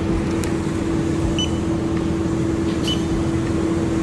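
Steady engine hum and low rumble of buses idling at a bus-terminal boarding gate, with two short high beeps about a second and a half apart.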